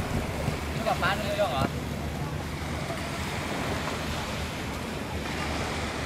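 Beach ambience: wind on the microphone over gentle surf, a steady rumbling hiss. A short exchange of voices comes through about a second in.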